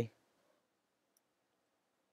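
A man's voice finishing a spoken sentence cuts off right at the start, followed by near silence.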